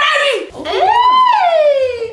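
A person's voice in a long high squeal that rises and then slides down in pitch, coming out of hard laughter.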